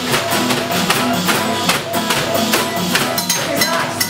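Acoustic guitar strumming in an instrumental break, with a shaker and makeshift percussion beating out a steady, quick rhythm.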